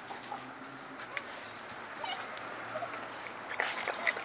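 Blue nose pit bull puppies playing, giving short whimpers and yips among scattered clicks, busier and louder in the second half with a sharp cry near the end.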